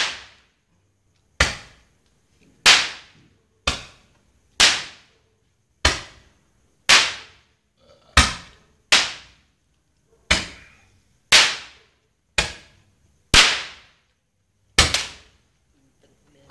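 A firework going off in a series of loud, sharp cracks, about one a second, each fading quickly, some fourteen in all.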